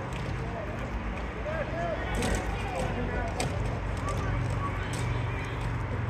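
Ball hockey game heard from the stands: distant players' voices calling out, a few sharp clacks of sticks and ball on the court, and a steady low hum underneath.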